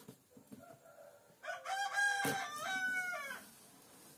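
A rooster crowing once, a single long call of about two seconds starting about a second and a half in, with a sharp click near its middle. Faint clicks and scrapes of a blade cutting packing tape on a cardboard box.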